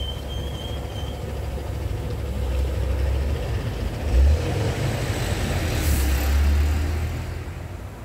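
A road vehicle passing, its low rumbling noise building for several seconds and dying away near the end, with a brief hiss about six seconds in. A short low thump about four seconds in.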